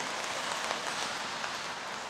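Steady rain falling on wet pavement: an even hiss with no distinct drops standing out.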